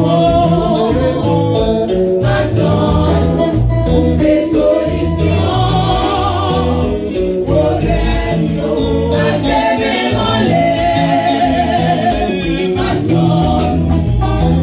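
Gospel choir of men and women singing together through microphones and a PA, over a live band's steady bass line and drum beat.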